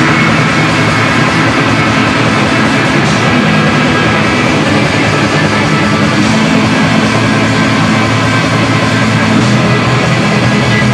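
Black metal band playing live: a loud, dense, unbroken wall of distorted band sound.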